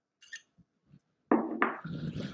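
Faint scraping of a spoon against a ceramic bowl, then two quick knocks about a second and a half in as the small ceramic bowl is set down on a wooden tabletop.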